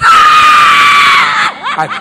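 A woman's loud, high-pitched scream, one long cry of about a second and a half that falls slightly in pitch before breaking off, given in answer to the call to shout 'Jesus' during deliverance prayer.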